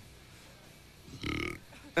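Quiet room tone with one short, low vocal sound from a man, a hesitant throat noise, a little past a second in.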